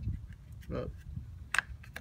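A single sharp click about one and a half seconds in: a plastic car battery terminal cover snapping shut, over a low rumble.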